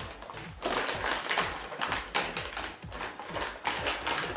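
Metallic anti-static shielding bag crinkling and crackling as it is unfolded and pulled open by hand, in a dense run of small crackles.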